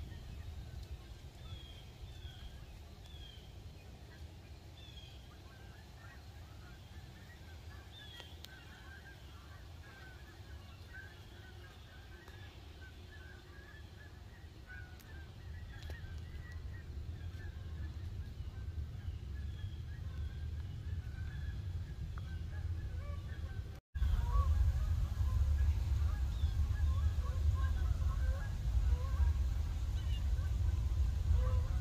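Geese honking, many short calls overlapping and growing denser partway through, with a few higher bird chirps early on. After a sudden break near the end, the honking continues over a louder low rumble.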